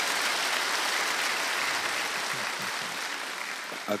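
Studio audience applauding: a dense, steady clapping that eases slightly near the end.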